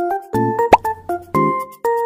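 Cheerful, childlike intro jingle made of short, bouncy keyboard notes, with a quick rising 'bloop' pop sound effect a little under a second in.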